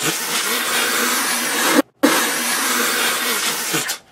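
A TV news clip's audio played backwards: garbled, unintelligible reversed speech under a loud hiss. It comes in two stretches, the second mirroring the first, with a short break just before halfway.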